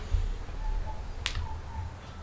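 A single sharp click a little past halfway, over a low rumble.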